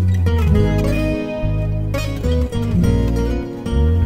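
Instrumental music intro with plucked acoustic guitar over a bass guitar line.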